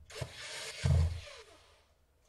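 Cordless drill-driver running briefly as it drives a screw into a laptop's bottom panel, with a knock about a second in, fading out near the end.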